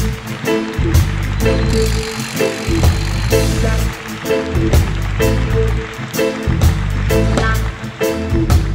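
Live reggae band playing an instrumental passage: a deep electric bass line, short repeated electric guitar chord strokes and a steady drum beat.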